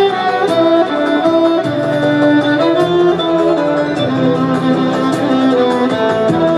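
Amplified violin playing a Turkish melody in the makam Kürdilihicaz, with long held notes, over a backing of lower sustained notes and a steady light beat.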